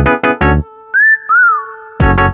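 Instrumental karaoke backing track with the melody removed: hard staccato keyboard chords with bass, then a short break in which two brief whistle-like sliding notes, the first rising and the second rising and falling, sound over a held pad.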